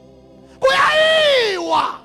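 A man's voice shouting one long, drawn-out call through a microphone and PA, its pitch rising then falling, with a short second syllable just after. Under it, faint held musical tones.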